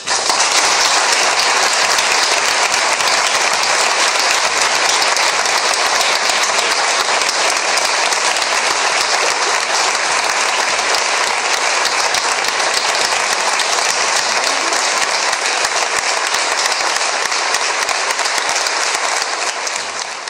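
Audience applause, dense and steady, starting at once and dying away near the end.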